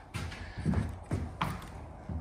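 Footsteps: about four thuds, roughly half a second apart, as a person walks across the enclosed trailer's floor and steps out of the doorway.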